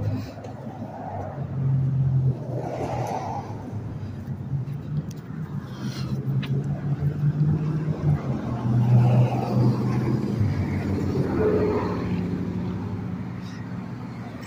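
Car engines in street traffic: a low, steady rumble that swells and fades as vehicles pass.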